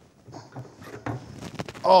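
Rummaging among objects inside an aluminium briefcase: faint rustling, then a quick run of light clicks and knocks about a second in.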